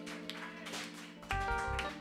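Live band playing soft background music: a held chord sounds throughout, and deep bass notes with a higher melody come in about a second and a half in, with a few light taps.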